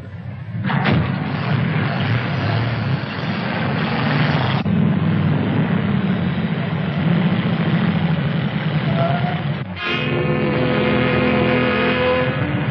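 Vintage film soundtrack of motor vehicles on the road: a loud, steady rumble of engines. About ten seconds in it cuts off and several steady tones sound together.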